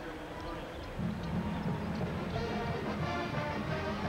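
Basketball arena crowd noise as the first half ends, with music coming in about a second in on steady held notes.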